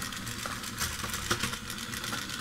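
Battery-powered 4M Table Top Robot walking: its small electric motor and gearbox run steadily while its legs tap the cutting mat in quick, irregular light clicks.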